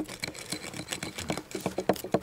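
Flint axes chopping at the fire-charred inside of a chestnut log being hollowed into a dugout canoe. Several tools are working at once, giving many quick, uneven knocks.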